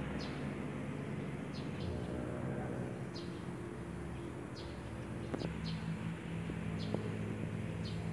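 Small birds chirping outdoors: short high notes in small clusters every second or so, over a low steady hum.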